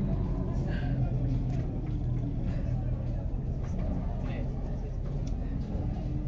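Indistinct background voices of people at the cattle pens over a steady low rumble.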